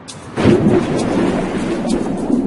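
A loud, low, thunder-like rumble that swells in about half a second in and then continues steadily.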